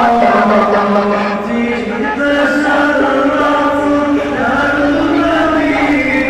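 Male voices chanting an Islamic devotional song with long held notes.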